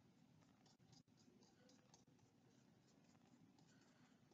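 Near silence, with faint, irregular scratchy strokes of a paintbrush dabbing and blending paint on a paper sketchbook.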